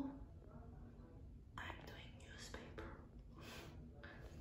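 A woman whispering faintly, a few short breathy phrases with pauses between them, over a low steady hum.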